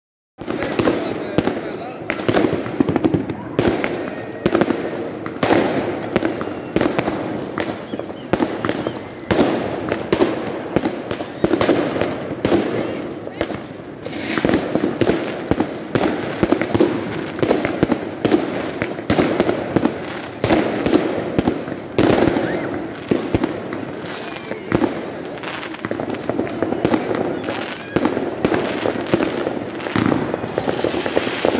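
Aerial fireworks going off non-stop in a thick string of bangs and crackles, with louder sharp reports about every second or two.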